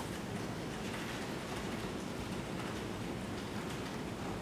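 Steady hiss with a low hum under it, without events: room tone picked up by an open microphone.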